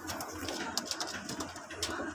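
A pair of Maranwala pigeons cooing in a low, rolling murmur, with a few sharp clicks over it.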